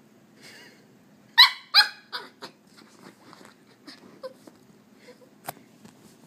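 A puppy giving two sharp, high-pitched yaps about a second and a half in, followed by a few softer, shorter yips. There is a brief sharp tap near the end.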